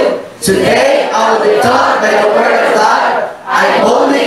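A congregation and a leader on microphone reciting a Bible confession aloud together in unison. The voices break briefly twice, between phrases.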